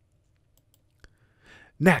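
A pause in a narrator's voice: near silence, a single sharp click about halfway through and a faint breath, then speech begins near the end.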